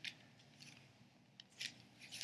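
Near silence: room tone with a few faint, short rustles.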